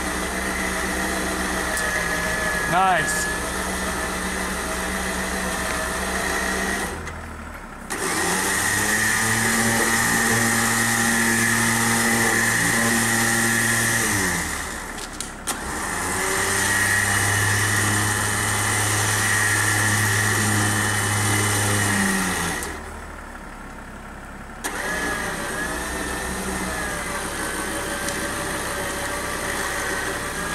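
An engine running at idle, revved up and held there for several seconds twice, with brief drops between, then settling back to idle.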